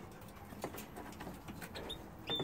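Faint, scattered small ticks and scratches from young canaries moving about in a wire cage.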